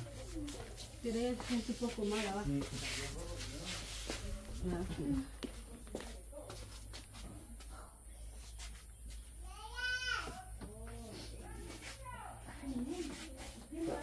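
Low voices of several people talking in a small room, with a short high-pitched wailing cry that rises and falls about ten seconds in.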